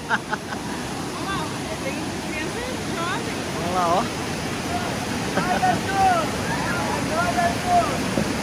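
Steady rush of whitewater rapids, with distant voices calling out over it now and then.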